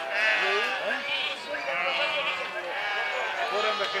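A flock of sheep bleating, with many calls overlapping one another throughout.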